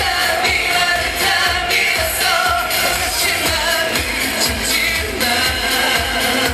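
K-pop boy group performing live: male voices singing into microphones over amplified pop backing with a steady beat, recorded from the audience.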